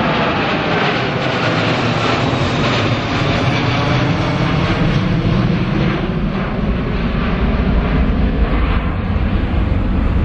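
Boeing 777 airliner's twin jet engines at takeoff power as it climbs out overhead and away: a loud, steady noise whose deep low rumble grows stronger in the second half.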